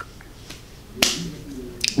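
A single sharp click about a second in, followed by a brief breathy hiss, in a pause between two stretches of talk.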